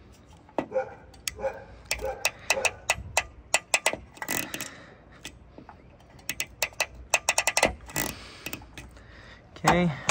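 Ratcheting wire crimper clicking in quick runs as it is squeezed down on a yellow heat-shrink butt connector, crimping it onto a wire.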